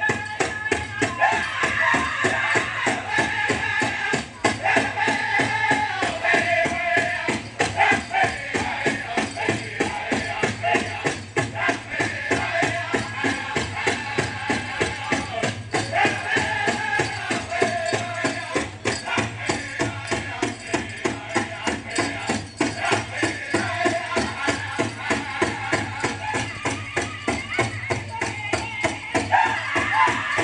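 A powwow song for the men's fancy dance: a drum beaten in a steady, fast beat under high-pitched group singing, with the dancer's bells jingling along.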